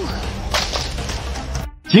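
A whip-like swoosh about half a second in, over a low rumbling background. The sound cuts off abruptly just before the narration returns.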